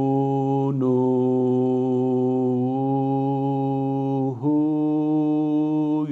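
A man's voice chanting Arabic letter-syllables with a damma, each held out on a long, steady 'ū' vowel at one pitch, as a Quran-recitation (tajweed) pronunciation drill. One syllable gives way to the next about a second in and another about four and a half seconds in, the middle one held longest.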